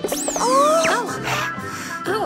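Cheerful cartoon background music with a sound effect for something popping out of a gift box: a fast whistling glide up that slides slowly back down, then squeaky up-and-down pitch sweeps about a second in.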